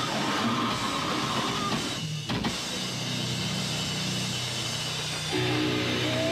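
Grindcore band playing live on distorted guitar, bass and drums, until the playing cuts off suddenly about two seconds in. Held guitar and bass notes then ring on, joined by a steadier pitched tone about five seconds in.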